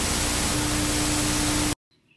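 TV static sound effect: a steady, even hiss of white noise, with a low steady tone joining about halfway through. It cuts off suddenly shortly before the end.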